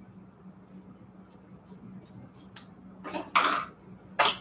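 Small thread snips cutting fabric thread tails: a run of faint, quick snips in the first three seconds, then a louder sound near the end as the snips are set down on the cutting mat.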